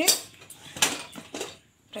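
Three sharp metal clinks as the weight valve is lifted off a steel pressure cooker and the lid is handled, once the pressure is released.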